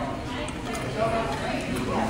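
Murmur of voices in a busy restaurant dining room, with a few light clicks and taps.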